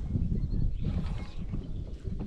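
Wind buffeting the microphone as a low, irregular rumble, with a brief rushing hiss about a second in.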